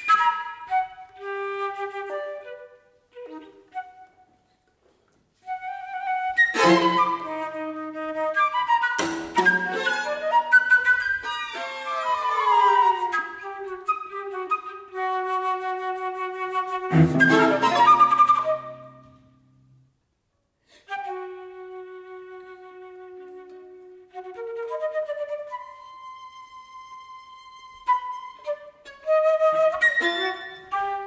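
Flute with violin, viola and cello playing sparse atonal chamber music: short flute phrases and glissandi cut by sharp, loud chords from the strings, with two brief silences. Near the end the flute holds a quiet steady note.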